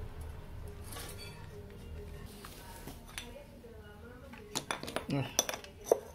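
A low steady hum, then a quick run of sharp metallic clinks and knocks in the last second and a half, as the metal parts of a car power-window motor and regulator are handled.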